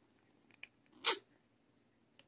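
A congested rescue kitten sneezing once, a short sharp burst about a second in, after two faint snuffling clicks. The sneeze comes from a respiratory infection that leaves her unable to breathe through her nose.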